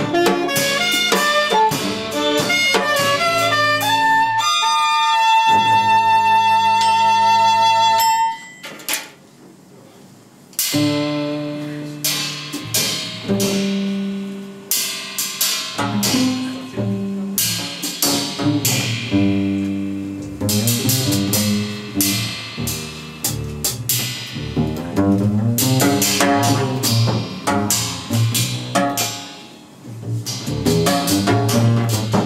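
A live jazz quartet of alto saxophone, violin, double bass and drums playing. A long high note is held from about four to eight seconds in, then a brief quiet lull follows, and the band comes back in with drum hits and a walking bass line.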